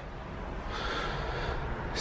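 A single soft breath close to the microphone, lasting about a second, over a low steady room hum.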